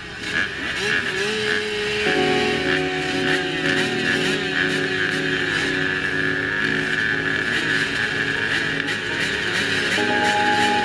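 Several motocross bikes revving on the start line and holding steady high revs together. One engine climbs in pitch about a second in, and the sound thickens as more bikes join it about two seconds in.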